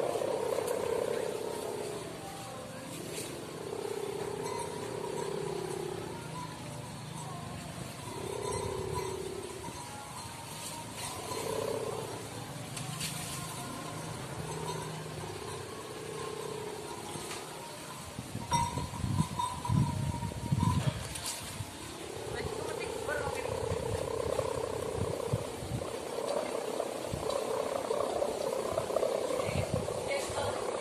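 Kite hummer (sendaren) on a large flying kite, droning at one steady pitch that swells and fades as the wind pulls on the kite. Gusts of wind buffet the microphone with low rumbling thumps from about eighteen to twenty-one seconds in.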